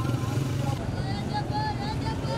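Street market ambience: indistinct voices over a steady low motor hum that drops away a little under a second in.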